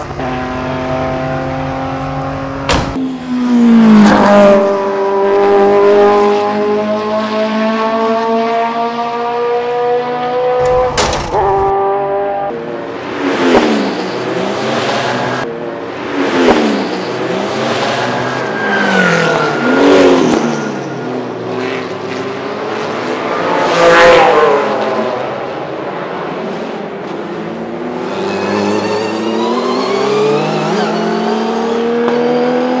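Ferrari Testarossa's flat-12 engine accelerating hard through the gears: the pitch climbs and then drops at upshifts about three and eleven seconds in. After that the engine note swings down and up several times, loudest about twenty-four seconds in.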